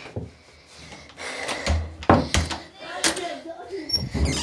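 Low voices, with a few knocks and thumps around two and three seconds in.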